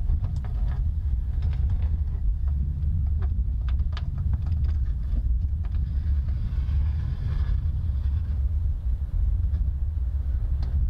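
Light clicks and taps of hands working at the back of a truck camper, fishing an electrical cable up through a hole, over a steady low rumble.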